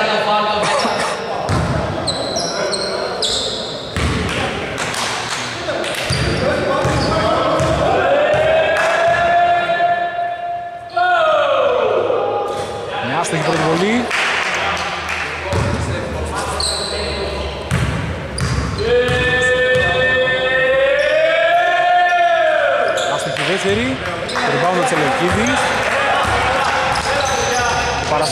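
Basketball bouncing on a hardwood court, with short high sneaker squeaks, in a large echoing hall. Twice, about 8 and 19 seconds in, a long drawn-out shout rises and then falls in pitch.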